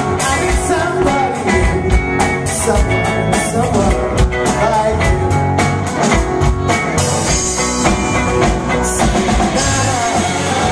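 Live rock band playing: drum kit, electric and acoustic guitars and bass, with a sung lead vocal.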